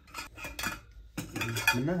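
Aluminium camping pot and lid clinking and clattering against a portable gas stove as they are handled, in several short knocks.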